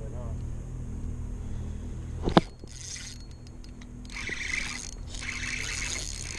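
Spinning reel being cranked as a hooked bass is reeled in to the boat, with a steady low hum underneath. A sharp knock comes about two seconds in, and bursts of rushing, whirring noise follow.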